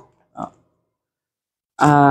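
Mostly silence, with a brief faint sound about half a second in, then a drawn-out spoken 'à' hesitation near the end.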